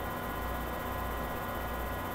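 Steady low electrical hum with a faint even hiss, the constant background of the recording setup; no other distinct sound.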